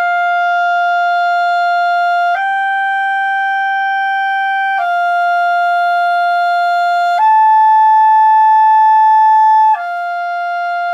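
A clarinet plays long held notes in slow practice of a technical passage. Each note lasts about two and a half seconds: it steps up a tone and back, then up a third and back to the same lower note.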